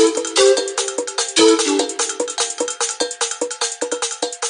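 Instrumental music: a fast, even run of short, ringing, cowbell-like percussion strokes on a few notes, with no bass or voices, slowly getting quieter.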